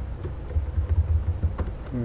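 Computer keyboard typing: a handful of separate key clicks, several of them close together near the end, over a low rumble.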